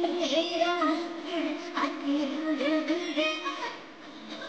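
A high voice singing a wavering, ornamented melody, with musical accompaniment, amplified through stage loudspeakers; the line eases off near the end.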